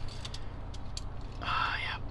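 Faint small clicks from a die-cast 1:64 flatbed tow truck model being handled, over a steady low hum. Near the end comes a short wordless vocal sound.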